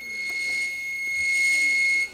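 Electric Toylander ride-on-car motor driving a DIY bead roller, running with a steady high-pitched whine that builds slightly over the first half second.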